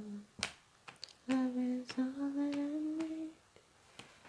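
A woman humming a tune: a short note at the start, then a longer one that steps slightly up in pitch before trailing off. Sharp clicks of tarot cards being shuffled and flicked come through it, the loudest about half a second in.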